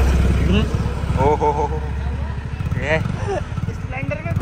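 Low, steady engine rumble of street traffic, loudest in the first second as a school bus passes close by, with short bits of speech over it.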